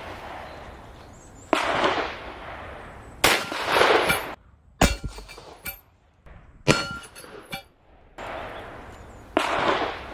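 Several .357 Magnum revolver shots from a Taurus Tracker 627, each a sharp report with a long echoing tail, as the same shot is shown again from other angles. In the middle come sharp metallic hits and a ringing clang from the steel plate behind the gypsum panel as the round knocks it down.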